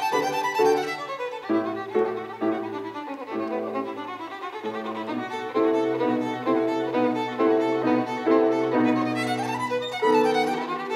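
Violin played with the bow, accompanied by a Steinway grand piano. Quick rising runs give way to a series of short, evenly repeated chords over sustained low piano notes.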